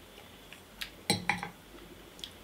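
Whisky tasting glass set down on a wooden barrel top: a faint click, then two short clinks a little after a second in.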